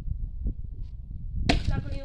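An axe chopping firewood: a faint knock about half a second in, then one sharp chop into the wood about one and a half seconds in. A voice follows the chop briefly.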